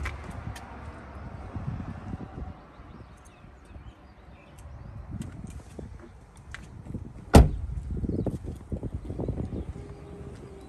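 A 2020 Ford Expedition's front passenger door shut once: a single loud thud about seven seconds in, the loudest sound here. An uneven low rumble on the microphone runs under it.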